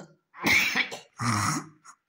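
A person coughing: two harsh coughs about a second apart, each lasting about half a second, then a short catch of breath.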